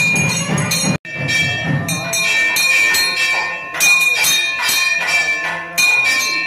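Brass hand bell rung rapidly during a temple puja, a quick run of clanging strokes with a sustained ringing tone. The ringing breaks off briefly about a second in, then carries on.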